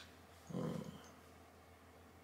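A man's brief, low closed-mouth murmur, 'un', about half a second in.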